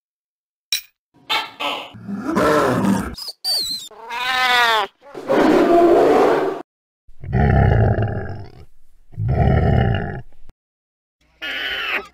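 A string of sound effects: a short laugh, a tone that rises and falls, then loud animal roars and growls in three bursts. Near the end an alpaca's call begins.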